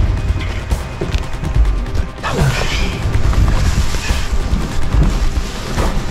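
A waterproof jacket and body scraping and rustling against the rock walls of a tight crawl, with bumps of the camera being knocked about, over background music with a deep low rumble.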